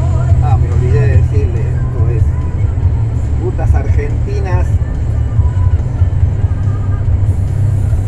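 Truck engine and road noise droning steadily inside the cab while driving, with a few short snatches of voice over it in the first half.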